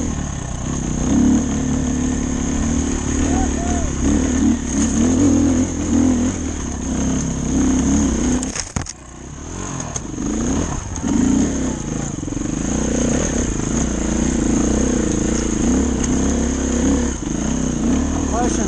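Dirt bike engine running and revving under load on a rocky uphill climb, the pitch rising and falling with the throttle. The engine note drops off sharply for a moment about halfway through, then picks back up.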